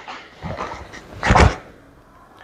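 Movement sounds of a taekwondo front kick and middle block: two short, sudden bursts of uniform swish and snap with feet landing on a foam mat, the second, about 1.3 s in, the louder.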